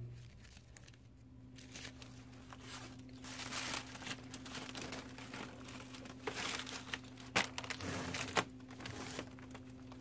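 Cellophane shrink wrap crinkling and rustling under hands, with a few sharper crackles near the end. A steady low hum runs underneath.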